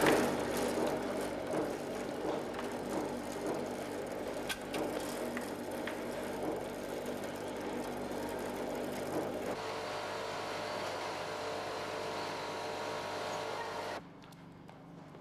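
Machinery on a production line running with a steady mechanical hum and a few light knocks. About nine and a half seconds in, the sound changes to a different steady hum with a higher whine.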